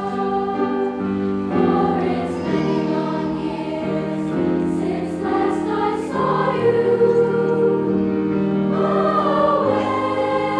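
Junior high girls' choir singing in harmony, with grand piano accompaniment; the sustained sung chords change every half second or so.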